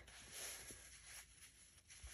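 Near silence, with faint rustling of a fabric quilt piece being pulled across and pressed flat by hand.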